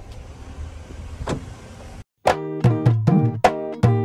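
A car's low cabin rumble with a single sharp click. About halfway through it cuts to background music with a steady percussive beat.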